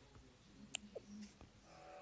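Near silence: faint room tone, with a single soft click a little under a second in and a few faint brief noises after it.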